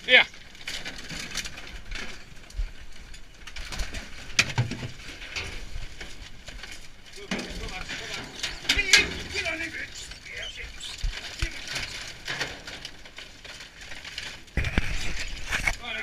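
Rubbish in a metal skip rattling and clattering as terriers dig and scramble through the pile and men shift the debris.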